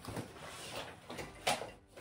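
Rummaging for a makeup brush: rustling and handling noise, with a sharp click about one and a half seconds in.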